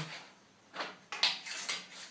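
Strips being slid and pressed into a table saw's steel mitre slots: a few short scraping, sliding sounds, the longest about a second in.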